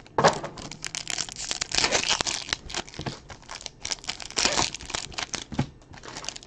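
Foil wrappers of Topps Finest baseball card packs crinkling and tearing as they are ripped open by hand, with many sharp crackles.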